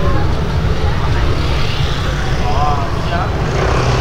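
Loud, steady low rumble of outdoor street noise, with short voice-like calls rising and falling in the second half.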